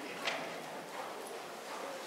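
Hoofbeats of a trotting horse on arena sand, a soft repeating beat with one sharper, louder hit about a quarter second in.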